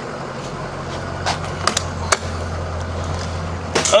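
Ford E-450 ambulance's engine idling with a steady low hum. A few light knocks come between about one and two seconds in.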